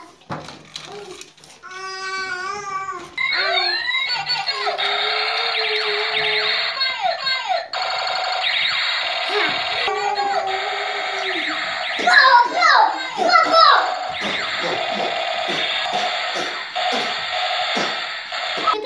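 Battery-powered toy robot, switched on, playing its electronic sound effects and music through its small speaker: sweeping, siren-like tones over a busy electronic backing, starting about three seconds in.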